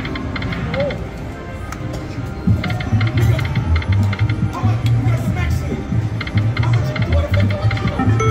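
Video slot machine spinning its reels, with short electronic chimes and reel-stop clicks in quick clusters on each spin, over casino background music; a deep pulsing bass beat comes in about two and a half seconds in.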